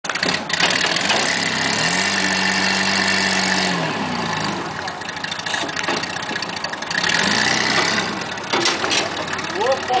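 Off-road buggy's engine working under load as it crawls through a muddy rut. The revs rise about two seconds in, hold, drop back just before four seconds, and climb again around seven seconds.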